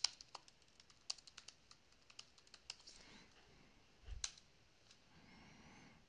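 Faint typing on a computer keyboard: a quick run of keystrokes over the first three seconds, then one heavier key press about four seconds in, the Enter key sending a terminal command.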